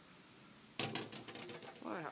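Handling noise as the camera is set down: a sudden knock about a second in, followed by a few quick clicks and a short rattle.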